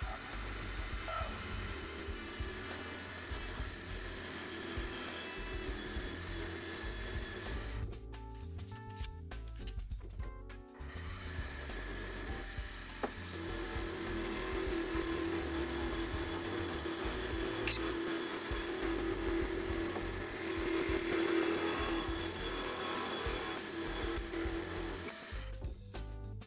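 Benchtop mini milling machine running, its cutting bit taking a light pass around a large hole in 1/8-inch aluminum plate as the rotary table is turned. The sound drops away briefly about eight seconds in, then carries on steadily. Background music plays along with it.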